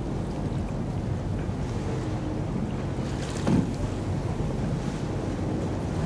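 A boat's engine runs steadily with a low hum, under wind buffeting the microphone and the wash of choppy water. A short louder sound comes about three and a half seconds in.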